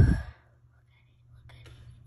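A word spoken close to the microphone, then about a second of near quiet, then faint whispering.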